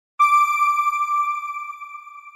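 A single bright electronic chime, struck just after the start and ringing out on one steady pitch as it slowly fades: the news channel's end-card sound logo.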